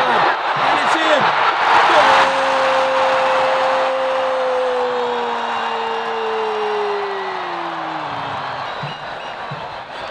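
A football commentator's drawn-out goal call: one long shouted vowel held for about six seconds, slowly sinking in pitch as the breath runs out, over stadium crowd cheering. The crowd noise is loudest in the first two seconds, before the call begins.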